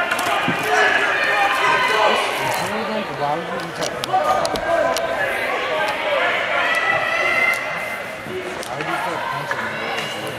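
Several people talking and calling out at once in an ice rink, with a few scattered sharp knocks.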